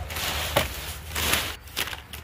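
Leaf rake scraping and rustling through dry leaves on the ground in two strokes, with a sharp click in the first.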